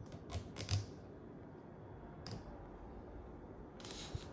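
Red plastic screw cap of a new vegetable oil bottle being twisted open by hand: a few faint clicks and creaks in the first second, then one more click about two seconds in.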